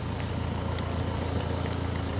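A motor vehicle engine running nearby: a steady low rumble.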